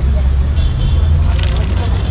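Steady low rumble of road traffic, with faint background voices.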